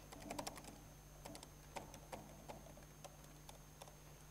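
Typing on a laptop keyboard, faint: a quick run of key presses at the start, then single keystrokes every half second or so.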